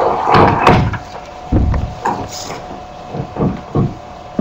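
Irregular thumps and rustling knocks of a clip-on microphone being handled, with a steady hum underneath.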